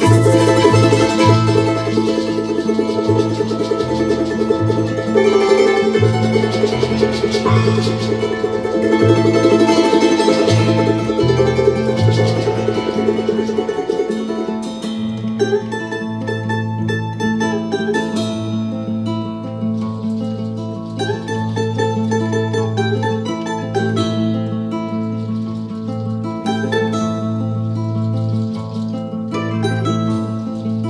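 Live Andean folk band playing: charango over acoustic guitar and upright bass. About halfway through, the texture thins and the bass moves to longer held notes.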